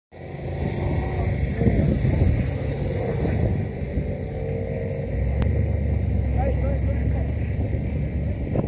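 Steady low rumble of wind buffeting the microphone, with faint voices calling across the water about six and a half seconds in.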